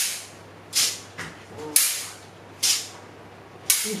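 Five short bursts of hiss, about one a second, each starting sharply and fading quickly.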